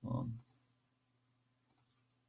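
Two faint computer mouse clicks, one about half a second in and one near the end, after a brief vocal sound at the start; a low steady hum sits underneath.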